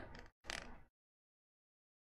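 Near silence, broken by one short, faint sound about half a second in.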